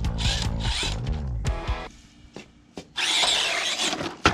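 Electric motor of a Losi Night Crawler 2.0 RC rock crawler whining as it is throttled, its pitch rising and falling, while the truck works along the edge of a brick ledge. The motor pauses for about a second with a couple of small clicks, then runs again near the end as the truck tips off the ledge.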